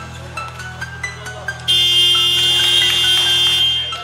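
Arena shot-clock/game-clock buzzer sounding for about two seconds, starting abruptly just before halfway through and cutting off near the end, marking the end of the first quarter. Background music plays throughout.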